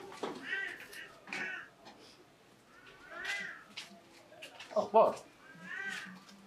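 A cat meowing repeatedly, about four short meows that rise and fall in pitch. A louder, lower cry comes about five seconds in.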